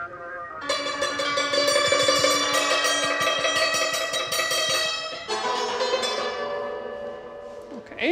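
Santur (Persian hammered dulcimer) being struck, its metal strings ringing together in a dense wash of notes that starts about half a second in. The notes change about five seconds in and fade away near the end.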